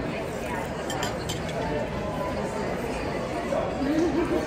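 Busy restaurant room sound: a murmur of diners' chatter with light clinks of china and cutlery, a few sharp clinks about a second in.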